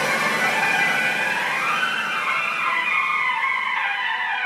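Sound effect in a DJ remix intro: a hissing, whooshing sweep that rises in pitch to a peak about two seconds in and then falls away, with no beat or bass under it.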